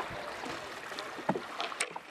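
Water moving against a dajak boat's hull as it is poled along a river, a steady wash of noise with a couple of faint knocks in the second half.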